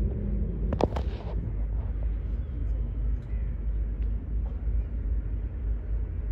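Open-air background noise: a steady low rumble, with one brief sharp sound about a second in.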